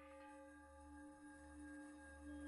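Very faint background music: a single steady, held tone with overtones, a soft drone.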